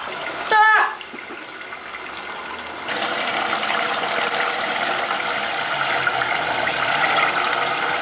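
Tofu cubes frying in a pot of hot oil, a steady bubbling sizzle that grows louder about three seconds in.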